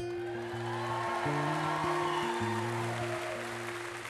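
Audience applauding over soft sustained chords from the backing band. The chord changes twice, and the applause swells and then tapers off.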